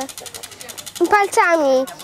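A child's voice speaking a few words about a second in, over a faint, fast, even high-pitched ticking.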